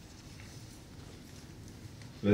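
Quiet room tone: a steady low hum with a few faint ticks.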